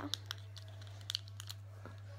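Buttons on a plastic fidget cube being pressed: a few faint, irregular clicks.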